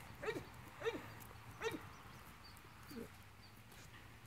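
Four faint, short animal sounds, spaced about half a second to a second apart, over a low background hum.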